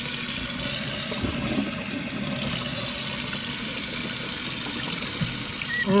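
A steady rushing hiss, strongest in the highs, that holds at an even level and cuts off suddenly at the end.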